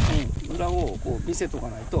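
People talking in short Japanese phrases, over a constant low rumble of wind on the microphone.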